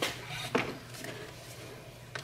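Plastic hose-end sprayer head being set onto a plastic bottle and screwed on. Two light clicks in the first half-second, then faint handling.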